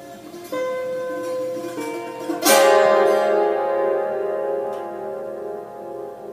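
Yanggeum, the Korean hammered dulcimer with metal strings, sounding a few long ringing notes. About two and a half seconds in, a much louder note cluster is sounded, rings on and slowly fades.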